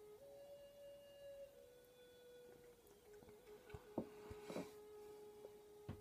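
Near silence with a faint, sustained tone, likely quiet background music, that shifts in pitch a few times and then holds steady. There are a few faint clicks.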